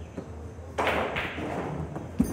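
Pool cue striking the cue ball sharply about three-quarters of a second in, then a second knock as billiard balls collide on the table.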